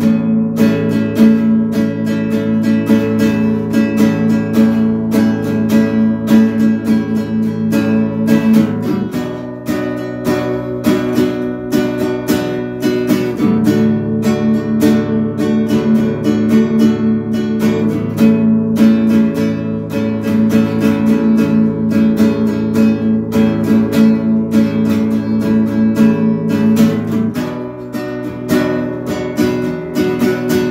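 Classical nylon-string acoustic guitar strummed in steady rhythm, moving through a chord progression with changes every few seconds.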